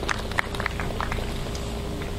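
Crowd applauding: many scattered, irregular hand claps that thin out toward the end.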